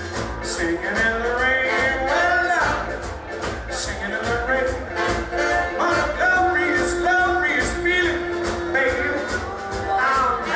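Live swing band playing, with trombone and saxophone lines over upright bass, drums and keyboard, to a steady beat.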